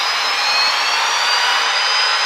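L-39's Ivchenko AI-25TL turbofan spooling up just after light-off during engine start: a steady rush of air with a high whine rising slowly in pitch as it accelerates toward idle.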